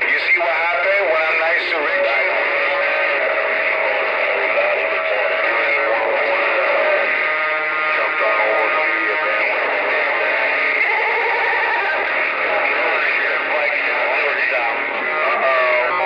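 CB radio on channel 19 receiving a strong, distorted jumble of transmissions: voices and warbling tones overlapping, with the thin, band-limited sound of a radio speaker. It cuts off suddenly at the end when the signal drops.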